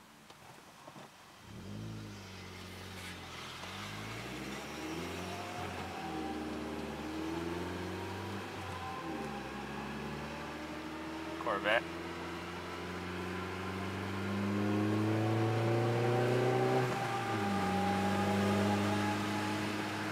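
Chevrolet Sonic RS 1.4-litre turbocharged four-cylinder accelerating hard from a stop, heard inside the cabin. The engine note climbs in pitch and drops back at each upshift, getting louder as the car picks up speed; the last and longest pull ends about three seconds before the close. The engine carries a newly fitted ZZP ported intake manifold and is on a test run.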